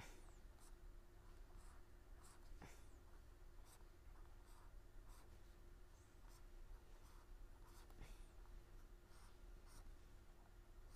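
Faint scratching strokes of writing as a diagram is drawn, at irregular intervals, over a steady faint hum.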